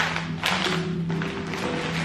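Background music with a few long held notes, under a few light taps from grocery packs being handled.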